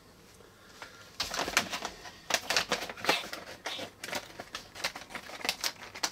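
A plastic or foil packet of ice-cream mix being handled and opened, with irregular crinkling and clicking starting about a second in.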